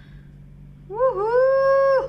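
A high-pitched voice sounding one long drawn-out note starting about a second in: a short dip, then held steady at one pitch for about a second before cutting off.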